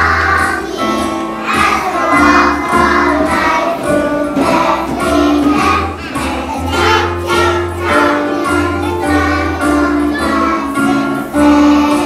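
A children's choir singing a Christmas song together over instrumental accompaniment with a steady bass line.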